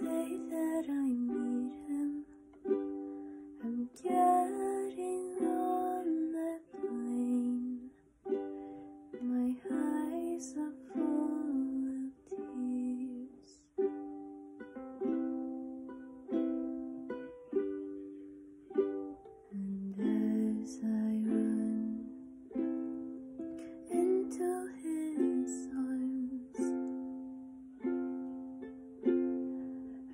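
A ukulele playing a slow original tune in a small room, one note or chord after another, each ringing and fading before the next is struck.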